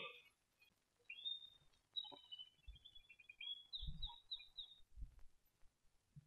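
Faint birds chirping: a run of short, high chirps over a few seconds. Two soft low thuds come near the end.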